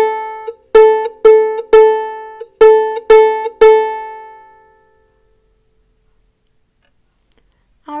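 Ukulele's open A string plucked on its own as a tuning reference note: one pluck at the start, then two groups of three plucks about half a second apart, each note ringing briefly and the last left to ring out.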